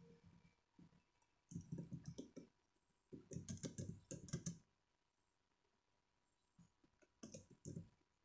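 Faint typing on an Acer laptop keyboard: three runs of quick key clicks, starting about one and a half seconds in, around three seconds in, and near the end, with quiet pauses between.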